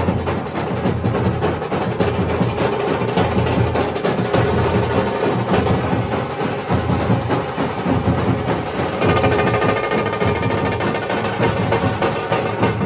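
Nashik dhol troupe playing: large double-headed dhol drums beaten with sticks in a loud, fast, dense rhythm.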